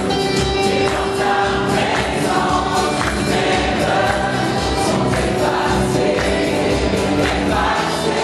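Gospel choir singing live over a band with a steady beat.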